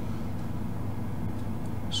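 A steady low hum with no distinct events.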